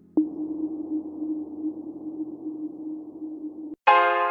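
Background music: one long held synthesizer note with a soft hiss, starting with a sharp click just after the start. Near the end it cuts out and bright electric-piano chords begin.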